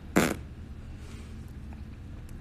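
A single short, breathy vocal huff from a man, like a one-beat laugh or scoff, just after the start; then only a low steady room hum.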